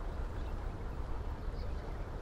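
Steady low rumbling background noise with no clear tone or distinct events.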